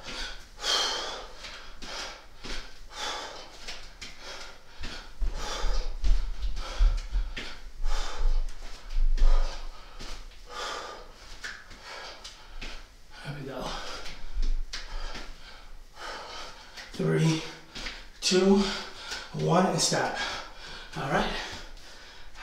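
A man breathing hard through a bodyweight cardio interval: sharp, forceful exhales more than once a second, with low thuds in the middle stretch. From about 17 seconds in, the breathing turns to loud voiced panting and gasps as the effort ends.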